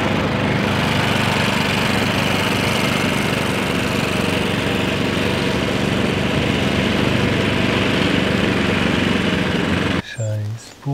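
Cylinder (reel) lawn mower's engine running steadily at a constant speed while it cuts the lawn low, the reel whirring through the grass.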